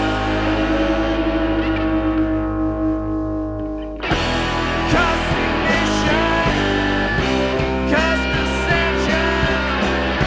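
Noise-rock band recording: a sustained guitar chord rings and slowly fades, its top end dying away, then about four seconds in the full band comes crashing back in with guitars and drums.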